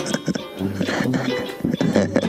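Small brass fanfare band playing swing-style music, with sousaphone bass notes, a banjo and drums keeping a regular beat under the horns.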